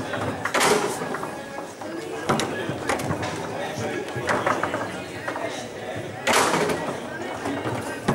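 Foosball table in play: sharp knocks as the ball is struck by the figures and hits the table walls, with rods clacking, about five times, the loudest a little past six seconds in. Steady chatter from a hall full of people underneath.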